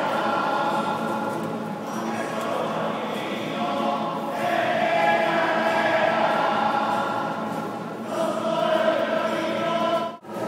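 A choir singing in long held phrases, with short breaks between phrases about two and four seconds in and again near the end.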